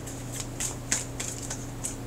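A deck of tarot cards handled and shuffled in the hands: about five short, crisp card flicks spread across the two seconds, over a low steady hum.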